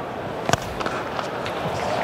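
A cricket bat strikes the ball once, a single sharp knock about half a second in, over the steady noise of a stadium crowd.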